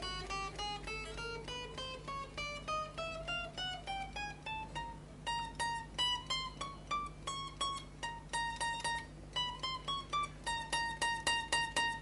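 Fender Duo-Sonic short-scale electric guitar, single notes picked one fret at a time, climbing steadily in pitch up the neck for the first few seconds and then repeated high up the neck, about three notes a second. The notes are a check that each fret plays cleanly after fret levelling.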